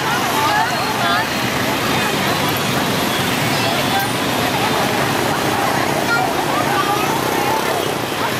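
Busy street ambience: many people talking at once over a steady rumble of motorbike traffic.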